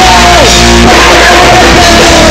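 Punk rock band playing live, very loud: electric guitar and drum kit under a shouted vocal. The vocal holds a high note that drops in pitch about half a second in, then holds again and starts to drop near the end.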